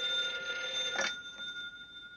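Desk telephone bell ringing for an incoming call: one steady ring of about two seconds that fades near the end as the receiver is lifted.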